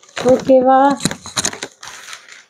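Plastic carrier bags and plastic snack packets crinkling as they are handled and moved, with a woman's brief speech over them.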